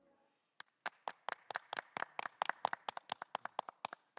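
A few people clapping by hand: separate, sharp, unsynchronised claps at about six or seven a second, starting about half a second in.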